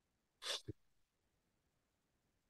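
A single short, sharp breath noise from a man about half a second in, ending in a brief voiced catch, with near silence around it.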